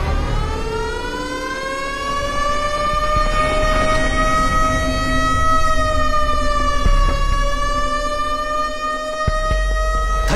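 An alarm siren wailing: one long tone that slowly rises over the first few seconds, dips briefly, then holds steady.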